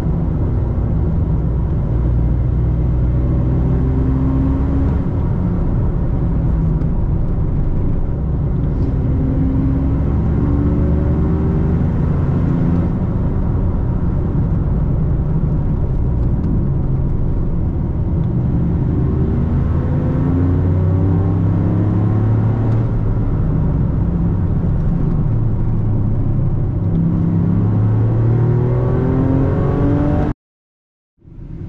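Toyota GR Yaris's turbocharged 1.6-litre three-cylinder engine heard from inside the cabin, running steadily under road and tyre noise on the freshly dyno-tuned car. The engine note rises several times as the car accelerates.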